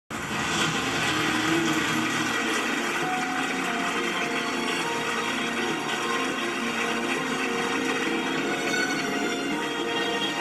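A crowd applauding, with music underneath, heard from a television's speaker.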